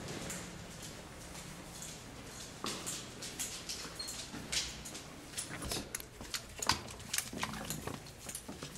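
Basset hound walking on a hard tiled hallway floor: irregular clicks and taps of its claws, sparse for the first couple of seconds and more frequent after that, with a few sharper knocks near the end.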